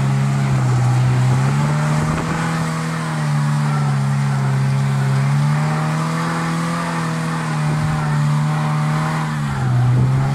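Small trials car's engine held at high revs, rising and falling in pitch several times as the stuck car spins its rear wheels on the rocky climb.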